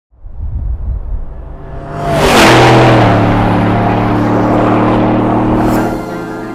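Cinematic logo sting: a low rumble, then a loud whoosh about two seconds in that sweeps down in pitch and settles into a steady, held low drone.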